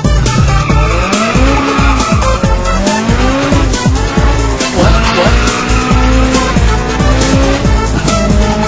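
Turbocharged B18C1 four-cylinder of a 1996 Honda Civic EK revving hard under acceleration, its pitch climbing and dropping back several times, with loud music with a steady beat laid over it.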